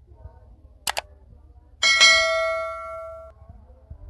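Subscribe-button animation sound effect: a quick double mouse click, then a bright bell ding that rings for about a second and a half and cuts off suddenly.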